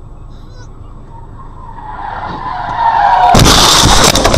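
Car tyres screeching under hard braking, the squeal growing louder over about two seconds, then a loud crash of a collision about three seconds in, with several sharp impacts.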